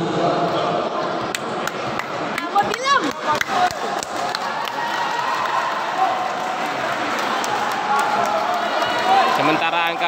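Crowd chatter and shouts in a sports hall, with a run of sharp smacks from a volleyball being served and hit in a rally, mostly in the first four seconds.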